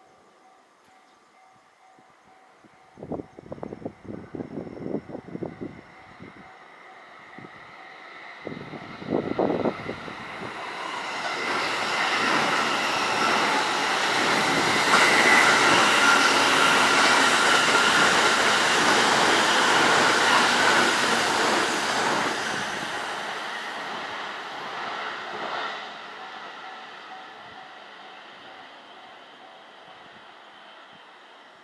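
Two JR East E531-series electric trains passing each other on the double track below. Their running noise builds from about ten seconds in, stays loud for about ten seconds and fades away over the last several seconds. Before that there are irregular low thumps.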